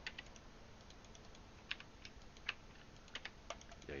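Faint clicks of a computer keyboard and mouse: a few single taps, then a quicker run of clicks in the last second.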